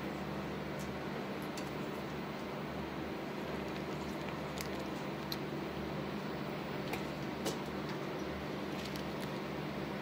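Steady low mechanical hum of a ventilation fan, with a few faint, sharp clicks spread through.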